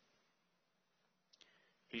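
Near silence: faint room tone, with a couple of brief faint clicks a little past halfway, before a man starts to speak.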